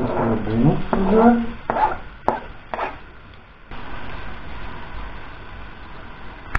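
Sliced red onions going into hot oil in a pot: a few knocks as they are scraped off a cutting board, then a steady sizzle from about four seconds in as they fry.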